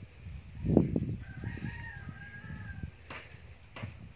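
A rooster crowing once, a drawn-out call of about a second and a half. It follows a low thump near the start, and two sharp clicks come near the end.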